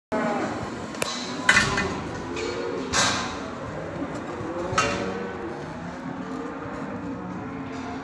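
A few sharp metallic clanks from the steel pen rails of a saleyard cattle pen, the loudest about a second and a half and three seconds in, over steady yard noise with faint distant cattle lowing.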